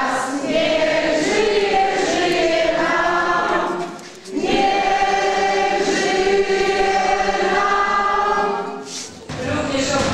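A group of people singing together in sustained phrases, with short breaks about four seconds in and again near the end.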